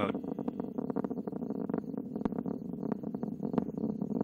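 Distant rumble of a Delta IV Heavy rocket's three RS-68A engines, with dense, irregular crackling over a steady low roar.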